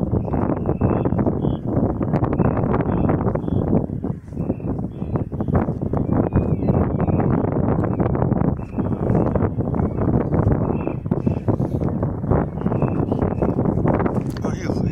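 Wind buffeting the microphone, with footsteps scuffing and knocking on stone steps.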